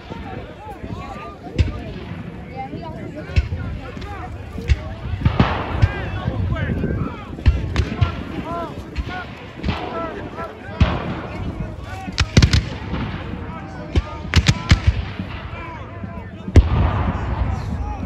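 Black-powder guns firing blanks: scattered, irregular musket shots with occasional heavier reports, the loudest near the end. Spectators' voices are heard between the shots.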